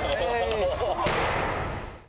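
Voices exclaiming, then about a second in a sudden edited-in impact sound effect whose hissing tail fades out.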